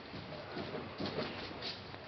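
Faint scuffling with a few soft knocks, as two Great Danes play.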